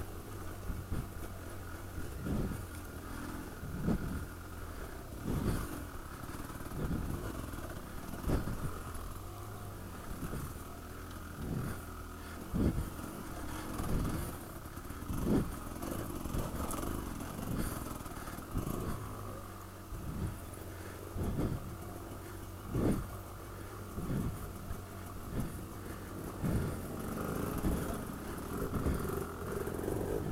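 Dirt bike engine running steadily at low trail speed, with a sharp knock or thump every second or two as the bike rides over bumps on a rough woodland trail.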